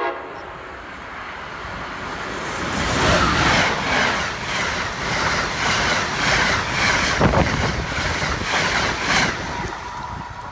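Amtrak passenger train of stainless-steel Amfleet coaches passing close by at speed. Its horn cuts off at the very start. A rush of wheels and air builds to full loudness about three seconds in, with a rapid run of wheel clicks on the rails as the cars go by, then eases off near the end.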